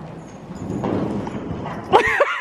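Horse scrambling up from a roll and bolting off, hooves scuffing and thudding through the loose sand footing of an indoor arena. A loud, sudden pitched call breaks in right at the end.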